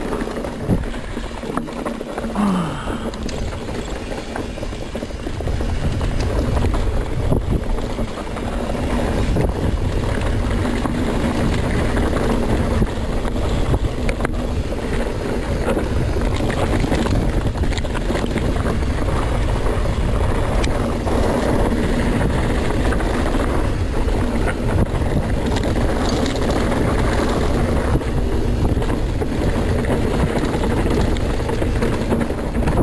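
Mountain bike descending a dusty trail at speed, heard from a camera on the rider: steady wind rumble on the microphone with tyre noise and the clatter of the bike over rough ground. The sound grows louder about six seconds in, and there is a brief squeak a couple of seconds in.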